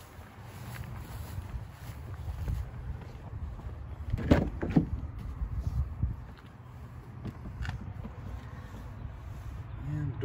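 Footsteps over grass under a steady low rumble, then, about four seconds in, the Ram 1500 pickup's passenger rear door is unlatched and pulled open with two sharp clicks half a second apart.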